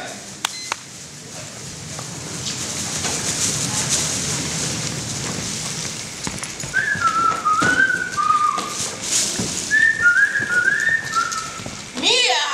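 A person whistling a short tune in two phrases of stepped notes, starting about halfway through, over the general noise of a hall.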